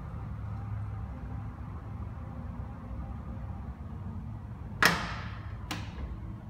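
Power liftgate of a 2016 Nissan Pathfinder closing by itself, then latching shut with a sharp thud near the end, followed by a shorter click.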